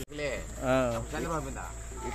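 Steady high-pitched chirring of crickets under a man's speaking voice.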